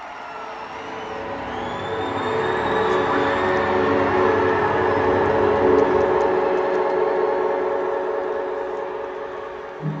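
Concert intro music: a sustained, swelling held chord over a noisy arena crowd. It builds to its loudest about halfway through, then eases off toward the end.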